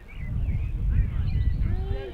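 Wind buffeting the microphone: a low, gusty rumble that starts about a quarter second in and is loudest near the middle, with faint high chirps above it.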